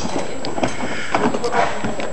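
Quick footsteps of people running, with scattered knocks and excited voices.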